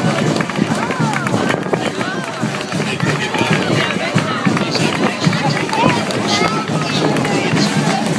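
Crowd of fans cheering, whooping and calling out over constant chatter, with a marching band playing behind.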